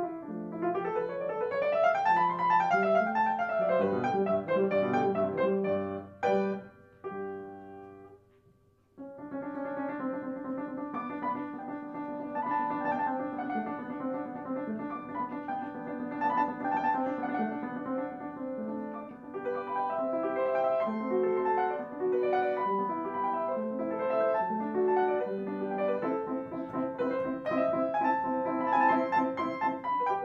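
Upright piano played solo: flowing rising and falling runs of notes that die away to a short pause about eight seconds in, then a fuller, steady passage of chords and melody resumes.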